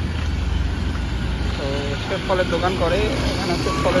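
Steady low rumble of street traffic, with people talking from about halfway through.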